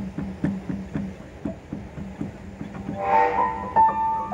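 Upright piano played with a short low note repeated about four times a second, then, about three seconds in, a louder cluster of middle notes struck together that rings on into new sustained notes.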